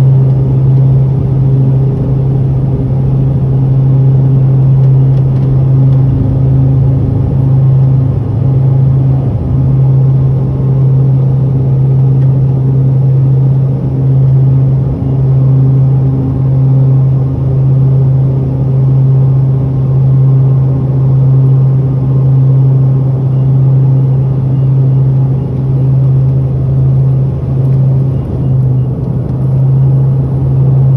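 Cabin sound of a Swearingen Fairchild Metroliner's twin Garrett TPE331 turboprop engines at takeoff and climb power: a loud, steady drone with a strong low hum. The loudness swells and fades in a slow, regular beat.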